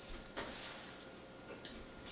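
Quiet room tone with two faint clicks, one about half a second in and one near the end.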